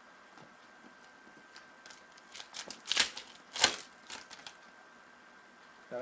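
Panini Prizm trading cards being handled and flipped against each other by hand: after a quiet start, a quick run of crisp clicks and rustles about two seconds in, with two sharper snaps in the middle.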